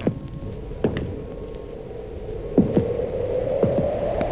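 A steady droning hum played off a flexi-disc record, edging slightly up in pitch near the end, with scattered clicks and pops of record surface noise.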